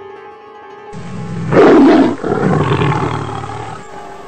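Tiger roar sound effect: a growl that swells into a loud roar about a second and a half in, then a second, weaker roar that dies away before the end, laid over background music.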